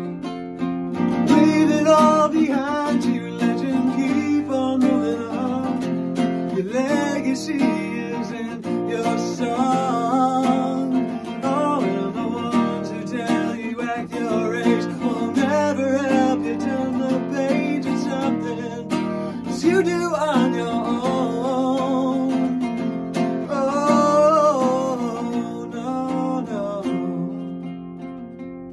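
Acoustic guitar strummed and picked through an instrumental passage of a song, with wordless vocal lines rising over it at times. It eases off slightly near the end.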